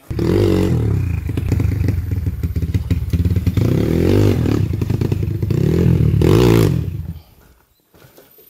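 Dirt bike engine revving in blips, its pitch rising and falling several times, then cutting off suddenly about seven seconds in.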